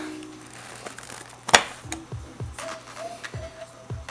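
Quiet background music with soft low notes and a steady hum, and one sharp click about a second and a half in as a plastic cling mold tray is lifted from its caddy.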